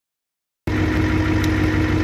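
Ford 6.9-litre IDI diesel V8 idling steadily, fully warmed up, heard from inside the truck's cab; the sound comes in about half a second in.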